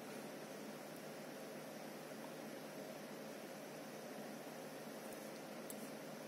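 Faint, steady hiss of a desktop PC's CPU air-cooler fan running, with a few faint clicks near the end.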